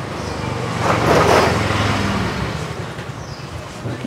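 Motor traffic: a steady low engine hum, with a louder swell of vehicle noise about a second in that fades away, as of a vehicle passing.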